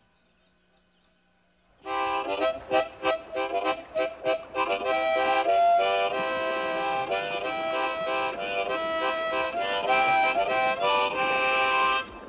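Harmonica playing a tune, coming in about two seconds in after a moment of near silence, with rhythmic chord strokes at first and then held chords and melody notes.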